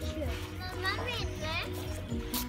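A young child's high-pitched voice calling out over background music.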